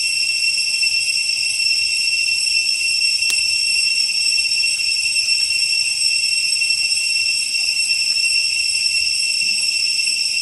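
Insects droning in a loud, steady, high-pitched chorus, with a single sharp click about three seconds in.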